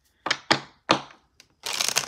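A deck of tarot cards being handled: three sharp clacks in the first second, then a riffle shuffle starting about a second and a half in, a fast papery flutter of cards.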